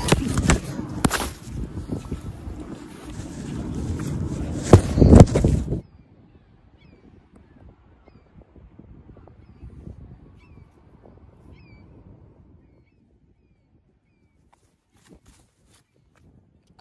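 Wind buffeting the microphone, with handling knocks, for about the first six seconds; then it drops away abruptly, leaving a few faint, short rising gull calls.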